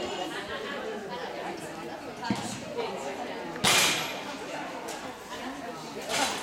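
Indistinct voices and chatter echoing in a large hall. About two-thirds of the way through, a short, loud rush of noise rises above them.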